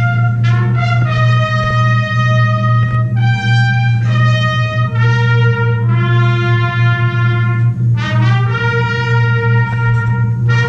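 Live orchestra playing, its brass section holding loud sustained chords that change about once a second over a steady low drone.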